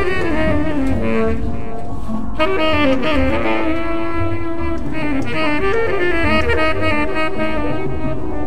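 Tenor saxophone improvising a free, wandering avant-garde jazz line with bent and sliding notes, over a low accompaniment. The line breaks off briefly a little over two seconds in, then carries on.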